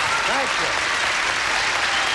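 Studio audience and contestants applauding steadily, with a man's voice calling out briefly about half a second in.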